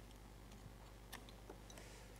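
Near silence: a steady low room hum with about five faint, scattered clicks as a laptop is operated to unmount a drive.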